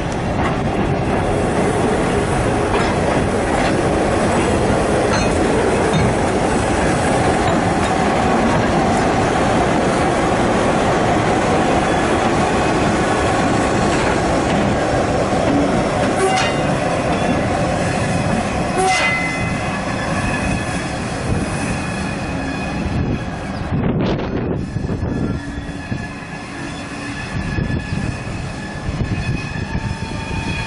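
Passenger train running through a rail yard, heard from on board: steady wheel and rail noise with a few knocks over rail joints and brief wheel squeal, growing quieter over the last third.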